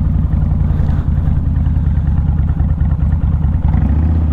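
Kawasaki VN1600 Mean Streak's V-twin engine running steadily while the motorcycle is ridden along a rutted dirt road.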